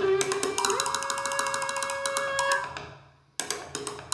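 A viola and percussion duo playing a contemporary piece. The viola holds a note that slides up and sustains, over a quick roll of triangle strokes. About three seconds in it all dies away almost to silence, then sharp percussion strikes come in near the end.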